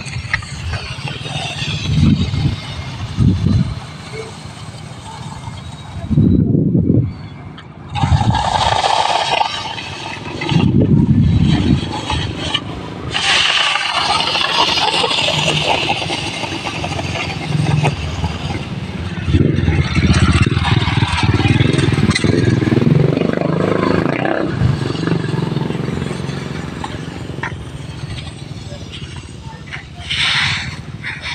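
Wooden rake dragged through a layer of palay (unhusked rice) spread out to dry, a grainy hiss of rice kernels shifting. Several loud low rumbling bursts come and go over it.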